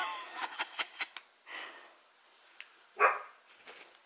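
A cat jumping and scuffling at a toy on a couch: a few short, sudden sounds, the loudest at the start with a brief squeak in it, and another sharp one about three seconds in.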